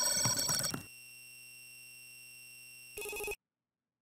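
Electronic intro sting of ringing, bell-like steady tones that drops about a second in to a quieter held tone. A short blip follows near the three-second mark, and then the sound cuts to dead silence.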